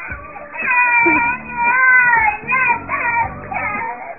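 A little girl's high-pitched, drawn-out wail, 'ya-ah-ah-ah', followed by a few shorter cries as she starts to cry.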